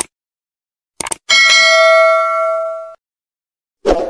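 Subscribe-animation sound effects: short mouse-click sounds, then a notification-bell ding about a second in that rings for about a second and a half and fades away.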